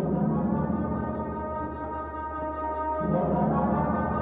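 Background music: long, sustained brass-like low notes over a steady held tone, with a new low note entering about three seconds in.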